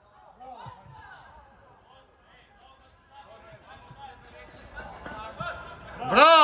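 Faint voices of players and spectators calling out across an outdoor football pitch, with no single voice standing out.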